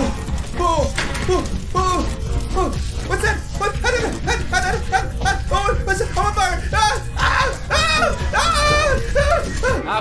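A man's voice in many short yelps and groans, coming thicker from about three seconds in, over background music with a steady low beat.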